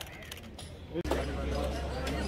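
Men's voices talking in the background. The sound breaks off abruptly about a second in, and a steady low hum with more voices runs after it.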